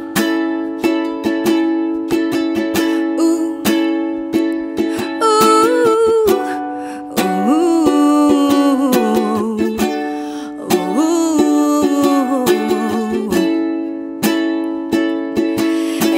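Ukulele strummed in a steady chord rhythm. From about five seconds in to about thirteen seconds, a woman sings a wordless, gliding melody over the strumming.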